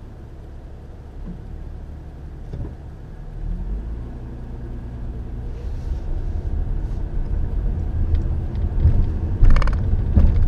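Car engine and road rumble heard from inside the cabin, growing louder as the car pulls away through the intersection. There is a brief, sharper clatter about nine and a half seconds in.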